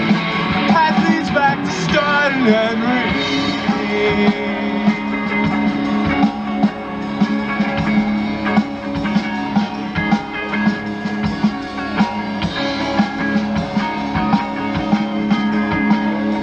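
Live rock band playing: electric guitars over a drum kit, with a steady low note underneath and a wavering melodic line in the first few seconds.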